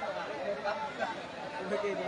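Spectators chattering, with many voices talking over one another.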